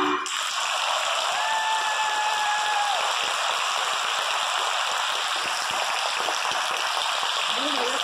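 Audience applauding in a large hall: steady, dense clapping that takes over as the music stops just at the start, with a single held tone rising above it for about two seconds early in the clapping.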